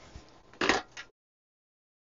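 A brief scrape of handling noise from the opened instrument on the bench, about two-thirds of a second in, followed by a smaller knock. Then the sound cuts out to complete silence.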